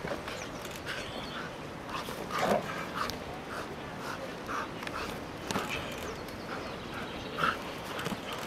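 A dog whining and yipping in short, high cries, about two a second, with a louder cry about two and a half seconds in and another near the end.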